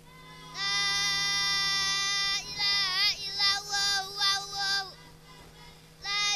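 A young reciter chanting Quranic verses in the melodic tilawah style through a microphone. The voice holds one long note, then moves into wavering, ornamented phrases that stop about five seconds in. A steady low electrical hum from the sound system runs underneath.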